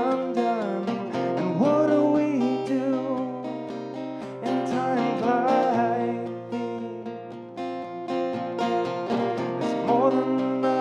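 A man singing while strumming an acoustic guitar, the voice coming in short phrases over steady chords.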